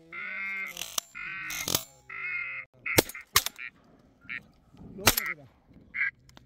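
Duck calls repeating: three long nasal calls in the first three seconds, then a few shorter ones, broken by two sharp shotgun shots about three and five seconds in.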